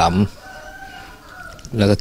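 A rooster crowing: one long call lasting over a second, quieter than the man's voice around it.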